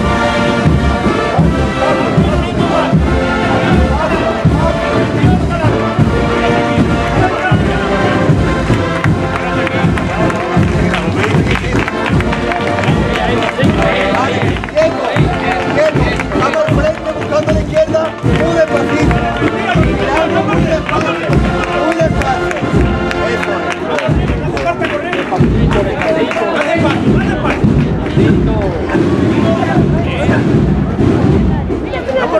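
Processional brass-and-drum band (agrupación musical) playing a march: brass chords over a steady drum beat. Crowd voices mix in, more plainly in the middle stretch.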